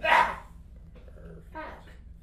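A short, loud vocal cry from the person on the table as a chiropractor thrusts down on their upper back with crossed hands, followed by a quieter voiced sound about a second and a half in.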